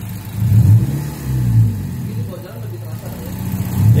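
Mazda MX-5 Miata engine revved with the car stationary: two quick blips of the throttle that rise and fall, then easing back toward idle. The engine is running with an aftermarket iForce ignition module fitted and switched to its second level.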